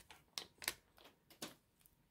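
Faint crinkles and rustles of a torn trading-card pack wrapper as a stack of baseball cards is slid out of it and handled: about five short, sharp crinkles in the first second and a half.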